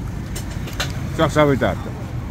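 A voice talking over a steady low rumble of road traffic, with a few short clicks in the first second.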